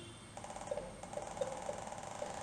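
Faint electronic alert sound from the trading software's alert pop-up: short notes repeating about three times a second over a steady tone, starting about a third of a second in.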